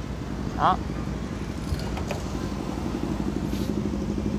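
Steady low hum of a motor vehicle engine running, unchanged throughout.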